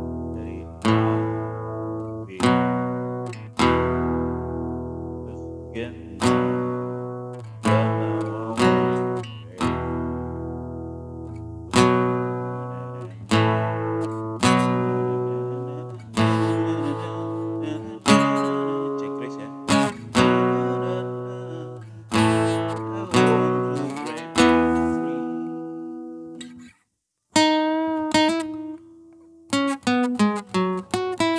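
Steel-string acoustic guitar strummed in chords, each chord struck about every one to two seconds and left to ring and fade. Near the end the playing breaks off for a moment, then single notes are picked more quickly.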